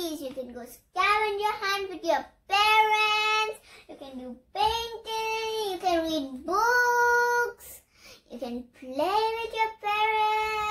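A young girl singing unaccompanied, in several phrases with long held notes and short breaks between them.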